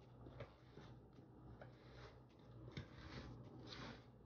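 Faint rustling and light scratchy ticks of hands rubbing and mixing flour in a ceramic bowl.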